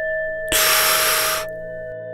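A struck bell tone rings on over a low drone that comes in at the start. About half a second in, a loud hissing rush of breath lasts about a second.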